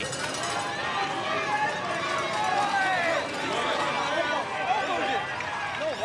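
Stadium crowd: many voices shouting and chattering over one another.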